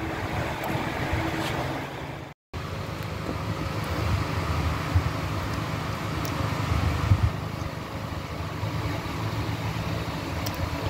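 Steady low rumble of background noise with a few faint ticks, cut by a brief silent break about two and a half seconds in.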